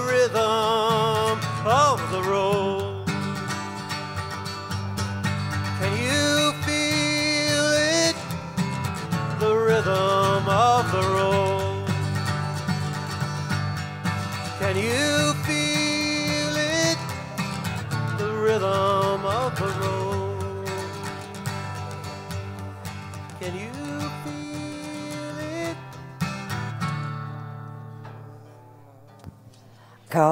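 Steel-string acoustic guitar strummed with a man singing long notes that slide up and are held with vibrato, the end of a country song. The music fades out over the last few seconds.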